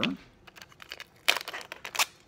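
Sticky tape being pulled off a handheld dispenser roll: a short rip about a second and a quarter in, then light crinkling and small clicks as the tape is handled.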